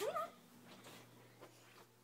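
A brief high-pitched whimper that rises in pitch right at the start, then faint room tone with a low steady hum.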